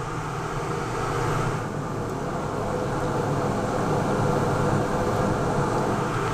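Laars Mascot FT gas-fired combi boiler running steadily, the even rushing noise of its combustion blower and burner. It has just been switched to minimum fire and is modulating down for a low-fire combustion check.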